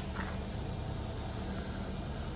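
Steady low mechanical hum with a faint steady tone, unchanging throughout.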